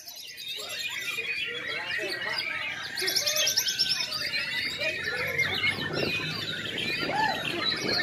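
Several white-rumped shamas (murai batu) singing at once, a dense overlapping jumble of varied whistles and chirps that thickens a few seconds in, with people's voices murmuring underneath.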